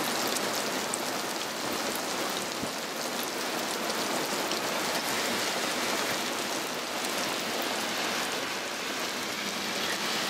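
Heavy rain coming down hard and steady on a flooded street, an even, unbroken hiss of the downpour.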